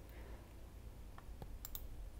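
Quiet room tone with a few faint, short clicks in the second half.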